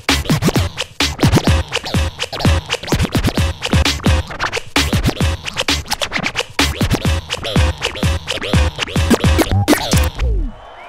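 Vinyl scratching on Technics turntables over a drum beat: rapid cuts and pitch-sliding scratch strokes, chopped by a battle mixer's crossfader.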